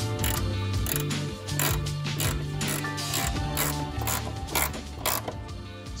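A hand ratchet clicking in a run of sharp ticks, a little over half a second apart, as a nut is worked, over background music with a held bass line.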